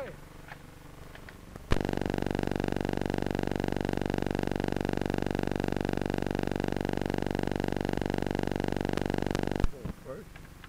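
A loud, steady electrical buzz with many overtones from an early sound-film soundtrack. It starts abruptly with a click about two seconds in and cuts off just as suddenly near the end, lasting about eight seconds.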